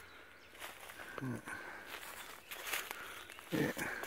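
Footsteps rustling through dry leaf litter, with a short laugh just over a second in and a spoken "yeah" near the end.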